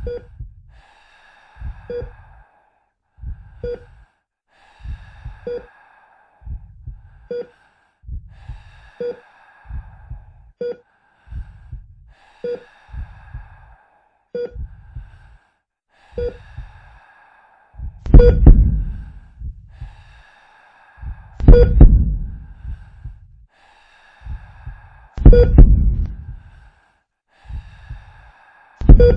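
Heartbeat sound effect, a double thump about every two seconds, with breathing heard between the beats. In the last third the beats become much louder and further apart.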